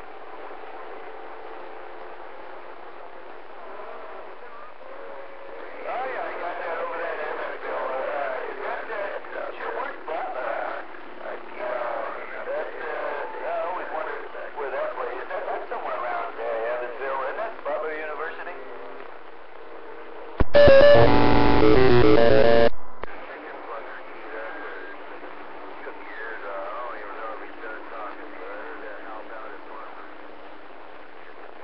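Two-way radio receiver (CB-style) picking up distant, weak stations: hiss with faint, garbled voices, mostly from about six seconds in until about nineteen seconds. About twenty seconds in, a much louder burst of buzzing, stepped tones lasts about two seconds and cuts off. Faint voices and whistling tones then return.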